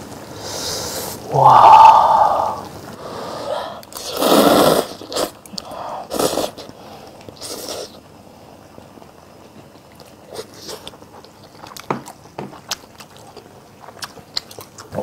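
Close-up eating sounds: a spoon scraping a metal pot and several loud slurps of noodles and soup in the first half, then quieter chewing with small wet clicks.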